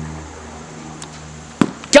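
A motor vehicle's engine hum fades away, then a sharp knock about a second and a half in as the pitched Blitzball hits the strike-zone target behind the swinging batter for strike three.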